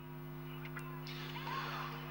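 Low-level steady hum, with a faint hiss coming in about halfway through.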